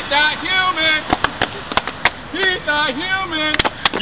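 Men's voices in short stretches, with a few sharp clicks or knocks scattered through, one of them near the end.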